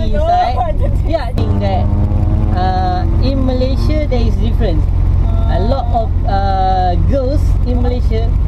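Steady low engine and road rumble inside a moving van's cabin, under voices talking and laughing.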